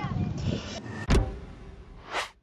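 Clapperboard sound effect from an edited scene transition: one sharp clap about a second in, trailing off afterwards.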